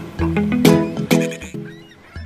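Background music: pitched, plucked-sounding notes over a low beat, about two notes a second, thinning out near the end.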